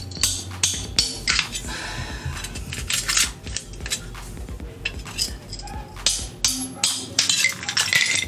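Steel pry bar knocking, scraping and levering in saw-cut slots in a concrete wall, with irregular metallic clinks and knocks, some ringing briefly. It is breaking off the concrete left between the shallow cuts so the saw can cut deeper.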